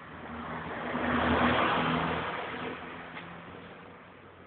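Opel Kadett GSI's 2.0-litre 16-valve four-cylinder engine revved once: the sound swells to its loudest about a second and a half in, then eases back down over the next second or so.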